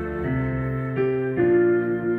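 Yamaha Clavinova digital piano playing a classical-style accompaniment. Sustained chords change a few times in the span.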